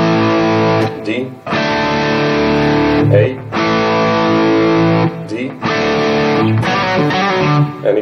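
Distorted electric guitar playing the chorus figure: A and D power chords alternate, the D voiced over the open A string in the bass. Each chord is struck once and left to ring for about a second and a half, four chords in all, with short breaks between them.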